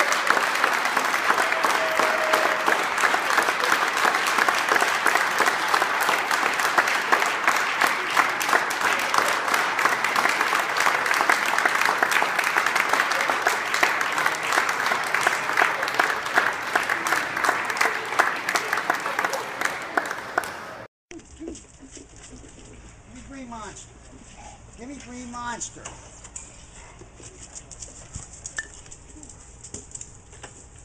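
A crowd applauding steadily for about twenty seconds, then stopping abruptly. A much quieter stretch follows with a few faint short cries.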